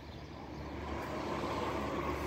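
Distant engine noise, a steady rumble that swells louder about a second in.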